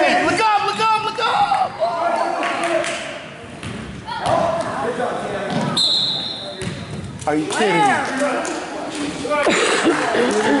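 Basketball bouncing on a hardwood gym floor, under the voices and shouts of spectators. A short referee's whistle blast comes about six seconds in, calling a foul on a shot.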